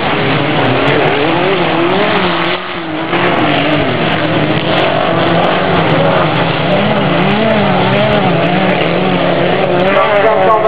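Engines of several dirt-track race cars revving hard, their pitch rising and falling as the drivers work the throttle around the track, with a short dip in loudness about three seconds in.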